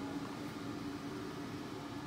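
A steady low hum over an even hiss: background room noise with no distinct event.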